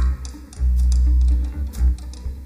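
Live rock power trio playing without vocals: electric bass holding a long low note from about half a second in, and a short one near the end, over drums and cymbals, with electric guitar.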